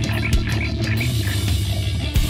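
Heavy rock band playing live, an instrumental stretch without vocals: electric guitar over a steady low bass, with a few drum hits.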